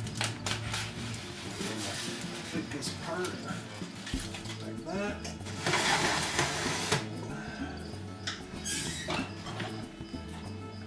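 Handling at an electric kitchen oven: foil and pan clatter, a rushing scrape about six seconds in as the rack is pushed in, and the oven door shutting near the end.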